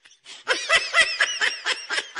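High-pitched laughter in quick, rapid pulses, starting about half a second in after a brief lull.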